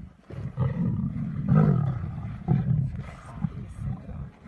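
A pride of lionesses growling over a kill as they feed, in rough, low-pitched bursts about once a second.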